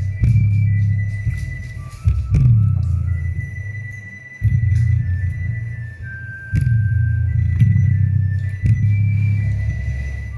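Bass-heavy music played loudly through a loudspeaker woofer: deep bass notes about every two seconds, each dropping in pitch as it hits, under a thin high melody.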